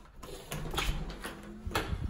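A door being unlatched and pushed open by hand, with a few sharp clicks and knocks from the latch and door.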